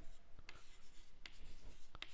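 Chalk writing on a chalkboard: faint scratching strokes with a few light taps of the chalk against the board.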